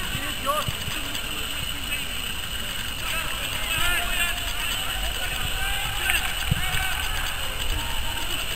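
Scattered shouts and calls of football players across an open pitch, heard at a distance, loudest about halfway through, over a steady low wind rumble on the microphone.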